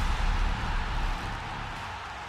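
The tail of a broadcast intro sting: a dense, noisy wash with a deep low rumble, fading away steadily after the theme's last hits.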